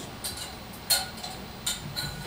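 Light clicks and clinks of a metal test-tube clamp against a glass test tube as a tube is fitted into it, a few small ticks with one brief ringing clink about a second in.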